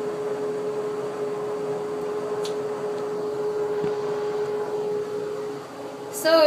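Steady hum of a running fan, with one constant mid-pitched tone through it.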